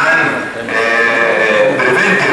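A person's voice through the hall's sound, holding one long drawn-out syllable near the middle.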